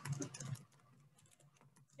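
Faint computer keyboard keystrokes typing a short phrase, a quick run of soft clicks that is loudest in the first half second and then fades.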